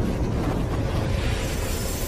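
Intro-animation sound effect: a steady rushing noise with a heavy low rumble, building under a logo reveal.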